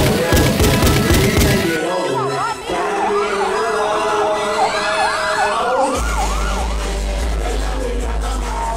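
Hip hop backing track with a heavy drum beat. A wailing siren effect follows, rising and falling about twice a second for some three seconds. A deep bass line comes in near the end.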